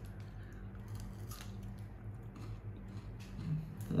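Chewing a mouthful of KitKat chocolate wafer, heard faintly as a few soft crunches and clicks over a steady low hum.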